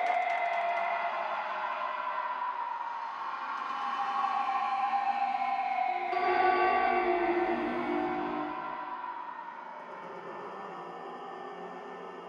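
Closing outro of a hitech psytrance track: the beat has dropped out, leaving sustained synth tones with no drums. They swell briefly about six seconds in, then fade away.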